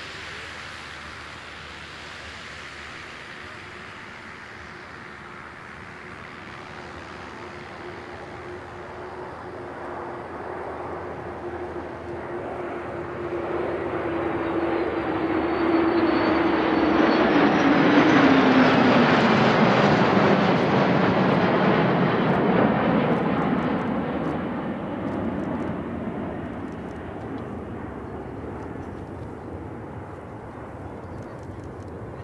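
A formation of military jets, a large jet transport flanked by smaller jets, flying past. The jet engine noise builds to its loudest about eighteen seconds in and then fades, and an engine tone drops in pitch as the formation passes.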